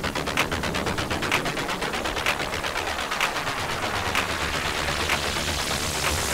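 Tech house music from a DJ mix: a steady electronic beat with crisp hi-hat and clap hits repeating evenly. The low end thins out for a couple of seconds midway and then comes back.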